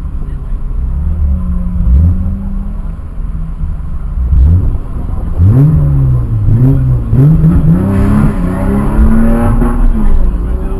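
BMW E30 3 Series sedan's engine blipped briefly twice, then launching and accelerating away, its pitch rising and falling several times. A steady engine idle runs underneath.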